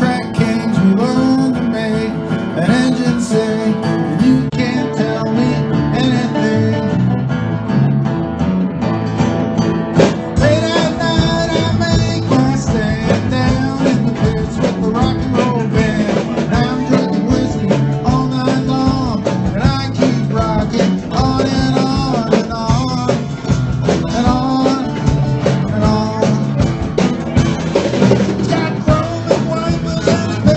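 Live acoustic guitar strummed in a steady rhythm, with a man singing over it.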